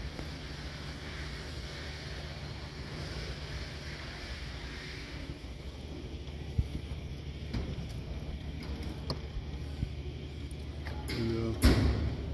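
Room tone of a large exhibition hall: a steady low hum with a faint murmur of distant voices and a few light knocks.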